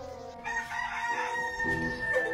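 A rooster crowing once: one long pitched call that begins about half a second in.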